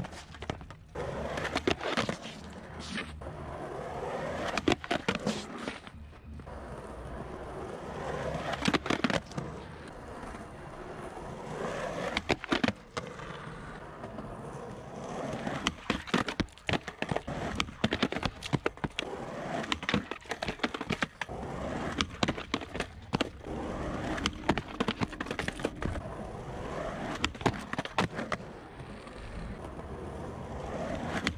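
Skateboard wheels rolling on concrete over several runs, swelling and fading, cut by many sharp clacks as the board is popped and lands. There are also scrapes of the trucks grinding along a concrete ledge during frontside smith grind attempts.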